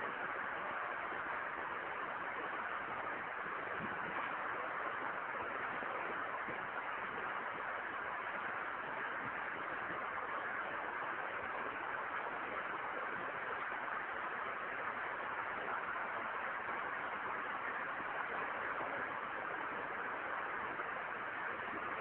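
Steady, even hiss of background recording noise, unchanging throughout, with no voice.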